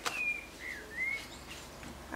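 A bird chirping three short whistled notes in quick succession, some gliding up or down, within the first second. A brief click comes at the very start.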